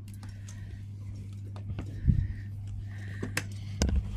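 A few sharp clicks and knocks of a door handle and lock being worked as a glazed door is opened, over a steady low hum; the loudest clicks come about two seconds in and near the end.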